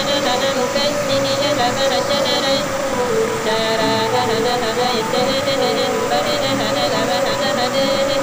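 Minangkabau saluang music: a bamboo-flute melody holding long, wavering notes with small ornaments, over a fast, evenly repeating high-pitched accompaniment that drops out briefly near the middle.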